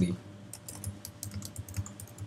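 Typing on a computer keyboard: a quick, uneven run of key clicks as a short phrase is typed.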